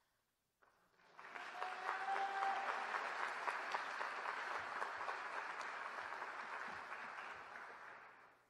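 Audience applauding for a graduate whose name has just been called, starting about a second in and dying away at the end.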